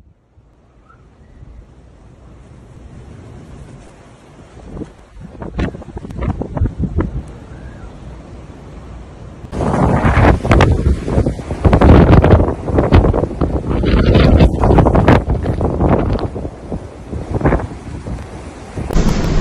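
Blizzard wind gusting. It is fairly soft at first, then about halfway through it becomes loud, with strong gusts buffeting the microphone.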